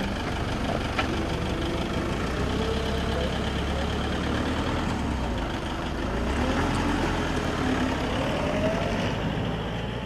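Toyota Hilux D-4D turbodiesel police pickup engine running close by, then pulling away, a little louder from about six seconds in. There is a single sharp click about a second in.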